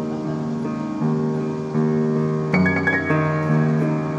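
Upright piano being played in slow, sustained chords that change every second or so, with a louder chord and added high notes struck about two and a half seconds in.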